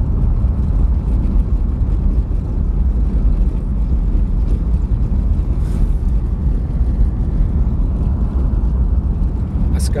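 Steady low rumble of a car's engine and tyres on the road, heard from inside the cabin while driving at a constant pace.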